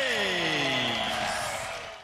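Boxing ring announcer's long, drawn-out final call of the winner's name, the voice sliding slowly down in pitch over about a second and a half. The sound fades out right at the end.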